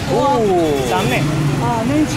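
Speech: a man talking, over a steady low hum of street traffic.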